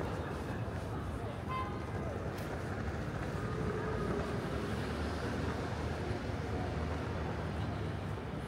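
Steady low hum of city traffic in the background of an open urban plaza at night, with a brief high-pitched toot about a second and a half in.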